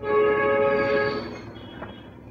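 A horn-like held chord of several steady tones that starts abruptly and lasts about a second and a half before fading out.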